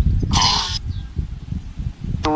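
Wind buffeting the microphone in uneven gusts, with one brief, high-pitched, voice-like squeak about half a second in.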